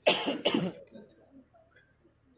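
A person coughing twice in quick succession close to the microphone: two short, harsh bursts in the first second.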